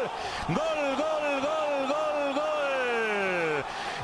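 Spanish football commentator's drawn-out goal call, chanting "gol" over and over about twice a second and ending in one long falling note near the end.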